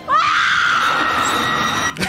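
A woman screaming in terror: one long, high-pitched scream that starts sharply, is held steady and cuts off abruptly near the end.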